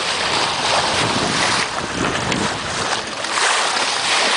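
Water rushing and splashing along the bow of a Farr 6000 trailer yacht making way under spinnaker, with wind buffeting the microphone. The wind rumble is heaviest in the middle.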